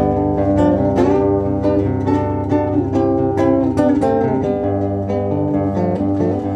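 Acoustic guitar played solo as an instrumental passage, picked chords ringing with several notes a second in a steady rhythm.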